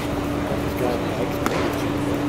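Ballpark ambience: faint scattered voices of spectators over a steady low hum, with one sharp pop about a second and a half in.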